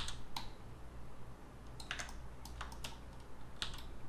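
A few scattered clicks from a computer keyboard and mouse, isolated strokes rather than continuous typing.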